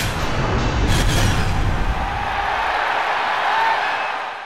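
Closing logo sting of music and sound effects: deep booming hits with a sharp hit about a second in. After about two seconds the low rumble drops away, leaving a lighter sustained musical tone.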